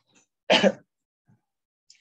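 A man clears his throat once, briefly.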